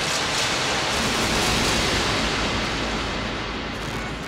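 Industrial electronic music with a dense wash of synthesized noise, like static, that swells over the first two seconds and then eases off.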